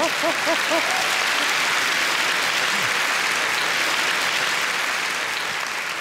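Large theatre audience applauding, with a burst of rhythmic laughter in the first second.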